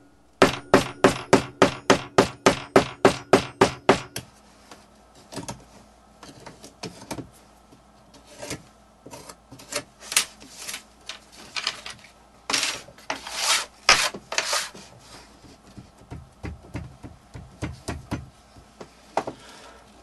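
Delft clay being packed into a casting mould frame with about fifteen quick hammer blows, roughly four a second, over the first four seconds. Then irregular scraping and rubbing as the excess clay is scraped off the top.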